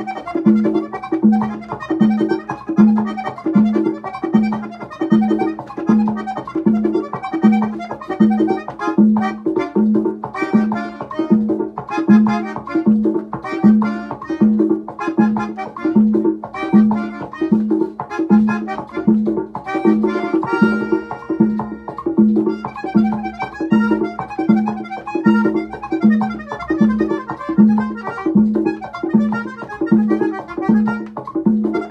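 Accordion playing a quick, busy melody over an even, repeating bass beat, with no singing.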